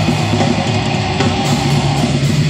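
Black metal band playing live: heavily distorted electric guitars over drums, a dense, loud, unbroken wall of sound with no vocals in this stretch.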